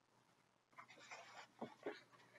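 Faint rustling and scraping of a hardcover picture book's cover and pages as it is opened, starting just under a second in after near silence.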